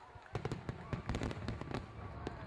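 Fireworks sound effect: a quick run of pops and crackles starting about a third of a second in.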